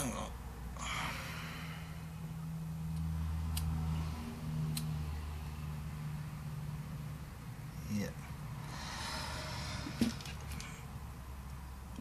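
A person breathing out twice, about a second in and again near the end, over a low steady hum, with a few faint clicks.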